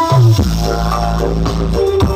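Very loud bass-heavy dance music from a truck-mounted "horeg" sound system. A short downward bass slide leads into one deep bass note held for over a second, and the beat comes back in near the end.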